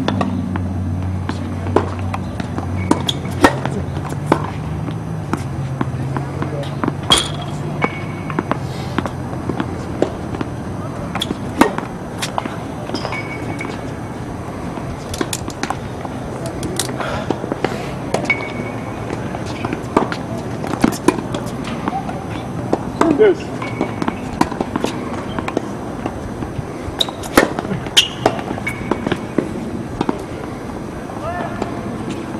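Tennis balls hit by rackets and bouncing on a hard court: sharp, separate pops scattered irregularly through the whole stretch. A low hum fades out over the first several seconds.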